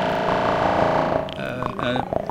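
Eurorack modular synthesizer sounding through the Joranalogue Delay 1 bucket-brigade delay: a sustained, multi-pitched synth tone that fades out about a second and a half in.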